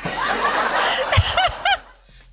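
People laughing hard at a joke: breathy, wheezing laughter at first, then a few quick pitched 'ha' bursts about a second and a half in, dying away near the end.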